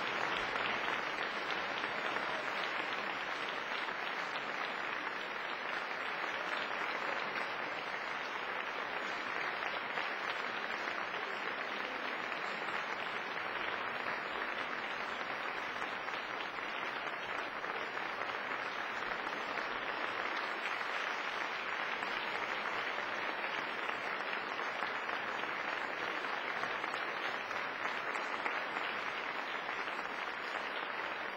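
A large concert audience applauding steadily after a performance: dense, even clapping throughout, with no music.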